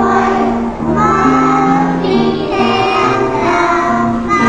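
A choir of young children singing a Christmas song together.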